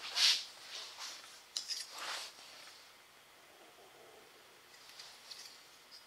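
Freshly bent aluminum sheet-metal bracket being pulled out of a bending fixture: short scraping, sliding sounds of metal against metal. The loudest comes just after the start, another about two seconds in, then a couple of faint clicks near the end.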